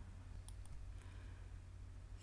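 A few faint, short clicks of a computer mouse and keyboard over quiet room tone.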